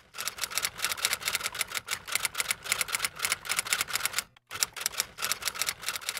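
Typewriter keystrokes in a quick, even run of several clicks a second, with a short break about four and a half seconds in.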